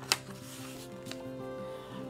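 Quiet background music of held notes that change every half second or so, with a brief sharp snap just after the start as a picture-book page is turned, and a fainter tick about a second in.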